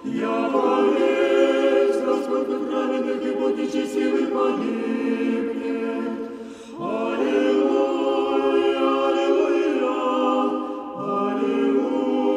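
Russian Orthodox church choir singing Kievan chant unaccompanied, in sustained multi-voice chords. There are three phrases: the first ends about six and a half seconds in and the third begins near the end, each after a short breath.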